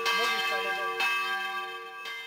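A bell struck twice, about a second apart, its ringing tones hanging on and slowly fading.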